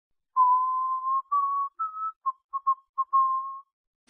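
Short intro jingle: a simple tune of single, thin, whistle-like notes with no chords — a long held note, two slightly higher ones, a few quick short blips, then a final held note.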